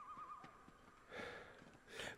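Near silence, with a faint warbling high tone during the first half-second and a faint hiss about a second in.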